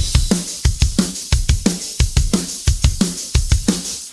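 Rock drum kit playing a fast, steady punk beat of kick and snare hits, with the guitar and bass left out of the mix.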